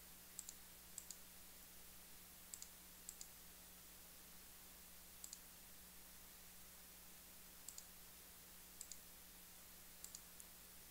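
Computer mouse button clicks, heard as about seven quick pairs of faint ticks spaced irregularly, over near-silent room tone with a faint steady hum.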